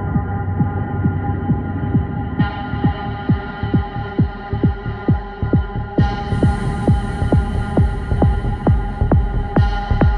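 Psytrance track in a DJ mix: a steady kick drum at about two and a half beats a second under held, droning synth tones. The treble is filtered open in steps, about two and a half and six seconds in.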